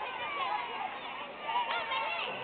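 A group of schoolchildren's voices chattering and calling out together, many high voices overlapping.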